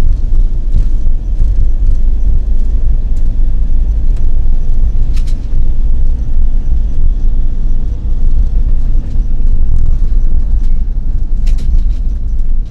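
A road vehicle driving along: a loud, steady low rumble of engine and road noise, with short sharp clicks about five seconds in and again near the end.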